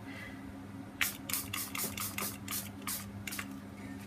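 Small fine-mist pump spray bottle of homemade food-colouring ink being squirted in quick succession: about ten short hissing squirts, around four a second, starting about a second in.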